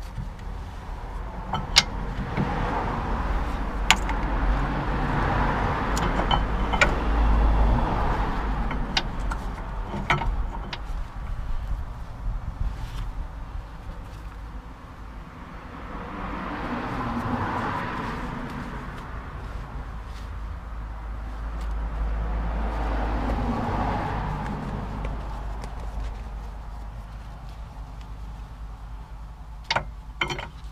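Cars passing on a road, the noise swelling and fading three times over a steady low rumble. A few sharp metallic clicks and knocks as the rear brake caliper is handled and fitted over the new pads.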